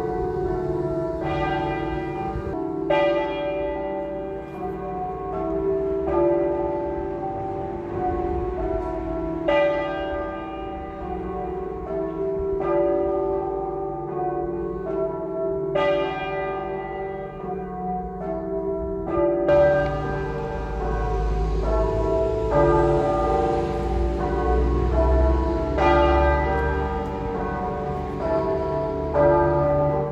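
Church tower bells ringing, one stroke after another, their tones ringing on and overlapping, with some strokes clearly louder than the rest.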